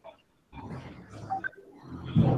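Faint, muffled background noise from an open microphone on a video call. It cuts in about half a second in, after a moment of dead silence from the call's noise gate.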